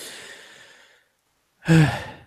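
A breathy exhale, like a sigh, from a person close to the microphone, fading out over about a second. Near the end comes a short voiced sound.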